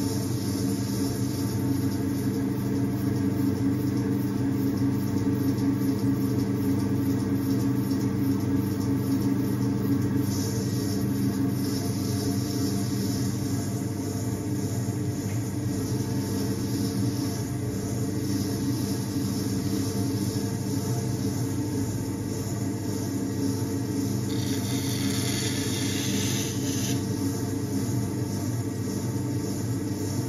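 Electric potter's wheel motor running with a steady low hum. A brief hiss comes in about three-quarters of the way through.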